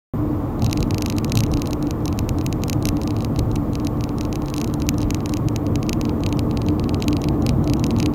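A moving car heard from inside the cabin: steady road and tyre noise with a low, even engine hum, and a rapid, irregular crackle over it.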